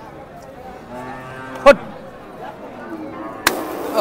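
A cow mooing in one held call, over distant voices in a cattle market. A single sharp knock sounds partway through, and a short rush of noise comes near the end.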